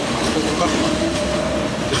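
Steady, loud rumbling background noise, with a faint held tone in the middle.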